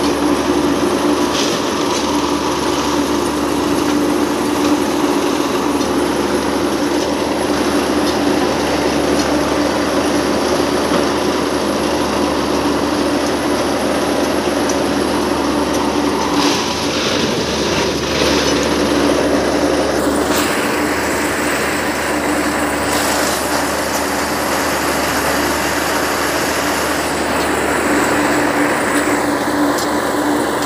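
Plasser track-tamping machine running loudly and steadily, with a constant engine and hydraulic hum as its tamping unit works the ballast under the sleepers. There are a few brief knocks, and the higher part of the sound changes about two-thirds of the way in.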